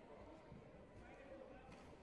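Faint, distant voices in a large hall's quiet room tone, with a few soft thuds.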